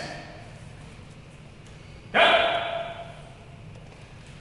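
One loud kiai shout from a young taekwondo student about two seconds in, with an echo trailing off after it.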